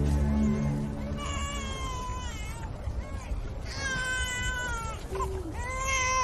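Music fades out in the first two seconds, then high, drawn-out wailing cries: two long ones of about a second and a half each, the pitch bending, and a third beginning at the very end.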